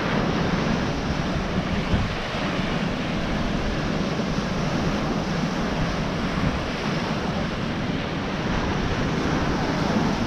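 Ocean surf washing onto a sandy beach in a steady hiss, with wind rumbling on the microphone.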